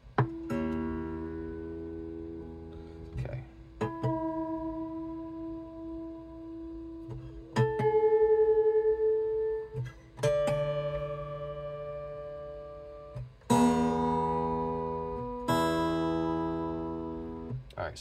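Steel strings of an acoustic travel guitar plucked one at a time, about five single notes each left to ring and fade, then two strummed chords near the end, played to check that the guitar is in tune.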